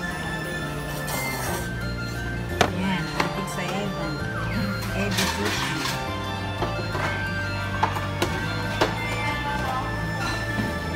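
Background music with a bass line that steps between notes, laid over a few sharp clinks and clicks of dishes.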